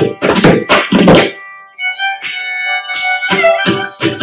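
Carnatic music: mridangam strokes for the first second or so, then a short break, then a violin phrase with the mridangam coming back in near the end.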